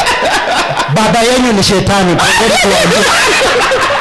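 Men laughing and chuckling loudly into handheld microphones, mixed with snatches of speech.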